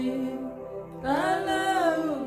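A woman singing a slow worship song, drawing out long notes. One note is held and fades about half a second in; a new note rises about a second in and is held, then slides down at the end.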